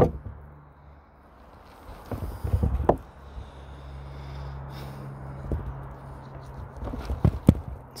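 Knife work and handling on an elk carcass: a burst of rustling and knocks about two seconds in and a few sharp clicks near the end, over a steady low hum.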